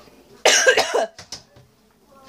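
A woman coughs once, a loud, harsh cough about half a second in that lasts about half a second, followed by a couple of faint clicks. She is sick.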